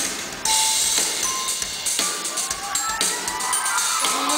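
Live pop-rock band playing an instrumental stretch between vocal lines, with drum kit hits and a rising tone in the second half. The band comes back in loudly about half a second in, after a brief dip.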